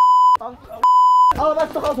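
Broadcast censor bleep: a steady, high-pitched beep tone laid over a heated argument to mask swearing. It cuts off sharply about half a second in, then comes again once, more briefly, around a second in, with men's agitated voices between and after the bleeps.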